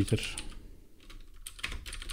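Computer keyboard keys being pressed: a handful of separate, irregularly spaced keystroke clicks as shortcuts are entered to format and save a code file.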